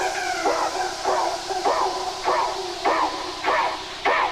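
Hardcore techno DJ mix in a breakdown with no kick drum: a repeating pitched lead sound, each note bending up and then down, about one and a half notes a second, over a high hiss that thins out.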